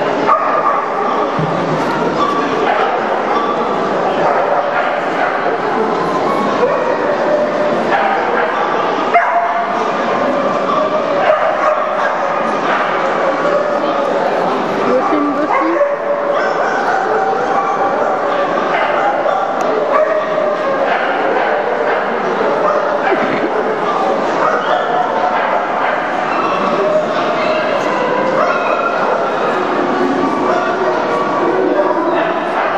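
Many dogs barking and yipping at once in a large hall, their calls overlapping without a break over steady crowd chatter.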